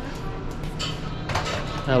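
Quiet background music under restaurant room sound, with a few soft clicks or knocks about halfway through. A man's voice starts right at the end.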